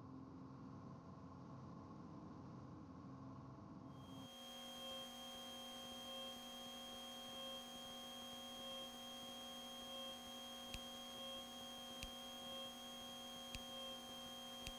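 Faint steady electrical hum on the aircraft intercom's recorded audio feed, made of several steady tones, with its pattern changing about four seconds in and a few faint clicks near the end.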